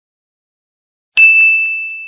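A single loud bell-like ding about a second in, sharp at the start, then ringing on one high pitch and fading.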